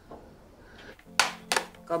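Two sharp knocks of kitchenware on a table in quick succession, about a second in, as food is being prepared.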